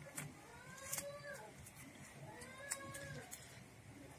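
A cat meowing faintly: two drawn-out meows, each rising and then falling in pitch, about a second and a half apart. Light clicks and crinkles of a foil balloon and plastic pump nozzle being handled come in between.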